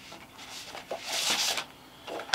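Large printed paper sheet rustling as it is picked up and slid across a tabletop, loudest for about half a second in the middle.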